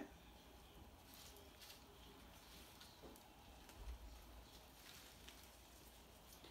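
Near silence: quiet room tone with a few faint clicks and a soft bump from small plastic lab tubes being handled.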